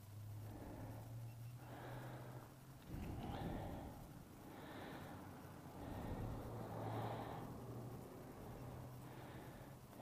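Quiet nasal breathing close to the microphone, a few slow breaths, over a faint low steady hum.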